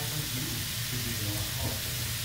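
Edamame pods and garlic sizzling steadily in oil in a wok, a soft even hiss with a low steady hum underneath.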